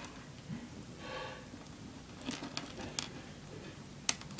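Faint clicks of plastic pony beads being handled and pushed along stretchy cord, a few light clicks about two to three seconds in; otherwise a quiet room.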